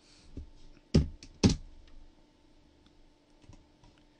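Computer keyboard keystrokes: a light tap, then two loud key presses about half a second apart about a second in, and a few faint clicks later.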